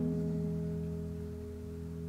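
A held electric guitar chord rings out and slowly fades, between sung lines of a song played back.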